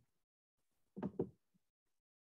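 A pause in the talk, almost silent, broken by two short, faint sounds in quick succession about a second in.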